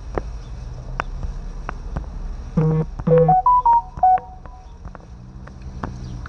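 A smartphone's text-message alert: a short electronic jingle of two low tones, then a quick run of stepped beeps, rising and falling, about two and a half to four seconds in. It plays over a low steady hum with a few faint clicks.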